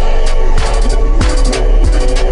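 Chopped-and-screwed hip hop beat, slowed and pitched down: deep 808 kicks that slide downward in pitch, crisp hi-hats and a sustained synth tone, with no rapping.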